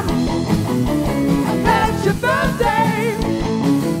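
Live rock band playing loudly: electric guitar with bending notes over bass and a steady drum beat.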